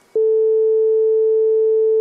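A loud, steady electronic sine tone at one mid pitch, starting suddenly just after the beginning and holding without change.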